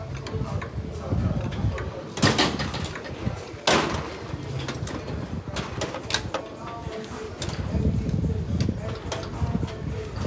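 Gym background noise with indistinct voices, broken by two loud, short noisy bursts about two and three and a half seconds in, and a few smaller clicks.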